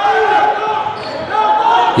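A handball bouncing on an indoor sports-hall floor during play, with voices in the hall.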